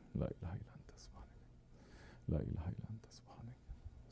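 A man reciting Arabic dhikr formulas in a low, half-whispered voice, in two short phrases with a pause between them.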